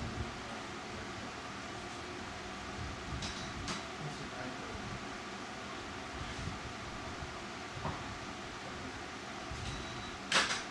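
Steady room tone with a low hum, like a fan or air handling running, and a few soft clicks about three to four seconds in and again near eight seconds.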